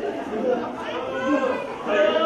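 Several voices talking and calling out over one another: ringside crowd chatter, with no single clear impact standing out.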